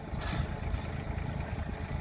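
Kubota compact tractor's diesel engine running steadily with a low rumble while the front loader works the gravel, with a brief hiss about a quarter second in.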